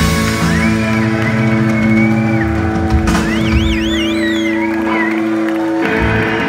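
Rock band playing live on electric guitars, bass and drums, holding a sustained chord. High notes bend and waver above it in the middle, and the band strikes a fresh chord right at the end.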